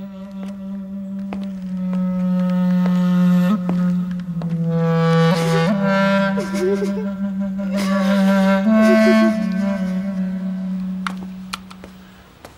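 Background score music: a slow melody over a steadily held low note, fading out near the end.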